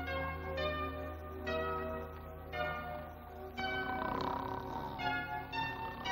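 Bell-like chime notes from a film background score, struck one after another about a second apart, each ringing on and fading, over a steady low hum.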